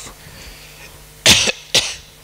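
A person coughing twice in quick succession past the middle: a longer cough, then a short one.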